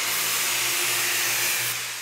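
Right angle grinder with a grit-60 flap disc grinding the cut end of a steel pipe: a steady, harsh hiss of abrasive on metal with a faint motor hum beneath, fading near the end as the disc comes off the pipe.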